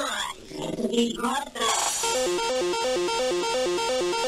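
Free tekno (hardtek) mix in a breakdown with the kick drum dropped out: a short voice-like sample during the first second and a half, then a fast repeating synth riff.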